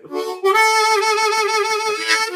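Blues harmonica holding one long note without hand wah, with a slight waver in it. A short note comes first, and the long note begins about half a second in.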